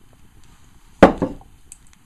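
A single knock about a second in: a glass wine bottle set down upright on a wooden table.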